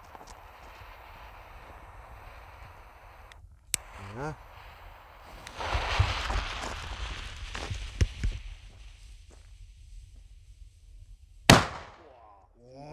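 A jet-flame lighter hisses for about three seconds while lighting the fuse, followed by scuffing steps on gravel, then near the end one sharp, very loud bang from a Pyro Union Kanonschlag, a 6-gram black-powder salute: brutal, as loud as a flash-powder banger.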